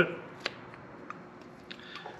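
A hand cutter snipping off a short piece of old rubber fuel line: one sharp snip about half a second in, then a few faint clicks of the tool.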